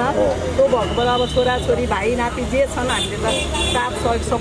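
A woman speaking continuously over roadside traffic: a steady low rumble of passing vehicles, with a brief vehicle horn about a second in.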